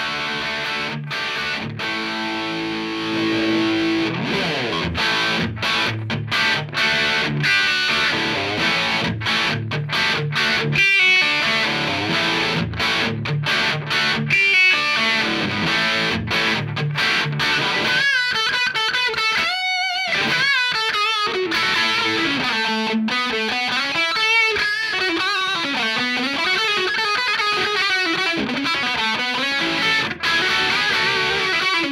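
Distorted electric guitar through a Dawner Prince Electronics Diktator distortion pedal, voiced for a Marshall-style crunch: chugging chords and riffs, then for the last third a single-note lead with bends and vibrato.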